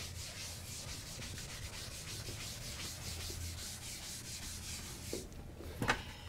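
Blackboard eraser wiping a chalkboard in quick, even back-and-forth strokes, stopping about five seconds in. A single sharp knock follows just before the end.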